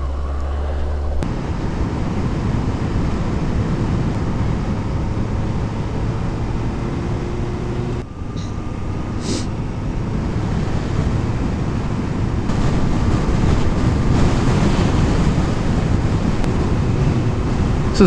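2015 Suzuki GSX-S750 inline-four motorcycle riding along at road speed, a steady engine note under heavy wind rush on the handlebar-mounted camera's microphone.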